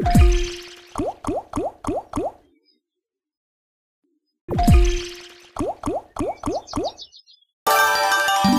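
Online video slot game sound effects during free spins. A spin starts with a falling low thud, then five short rising bubbly plops sound about a third of a second apart as the reels land one by one. The same pattern repeats about four and a half seconds in, and near the end a chiming win jingle of stepping notes begins.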